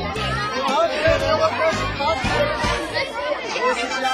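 Background music with a steady beat, over the chatter of a crowd of children and adults.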